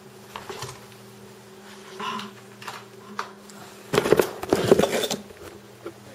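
Hands handling a plastic solar charger and its cable on a desk: a few light clicks, then about a second of loud clattering and rattling starting about four seconds in, over a steady low hum.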